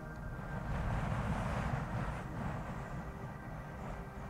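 Wind buffeting the camera microphone, a choppy low rumble with a stronger gust swelling about a second in and easing off toward the end.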